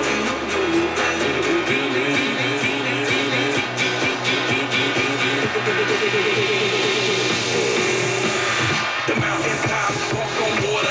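Music playing on an FM radio broadcast, with a new run of quick repeated notes coming in about halfway through.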